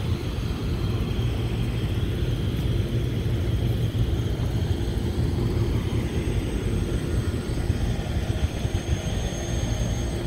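Packaged rooftop HVAC unit running: a steady low rumble with a faint whir.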